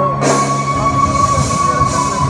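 Live Punjabi folk music through a concert sound system: one long high note held steady for about two seconds, sliding down near the end, over percussion and a bright hiss.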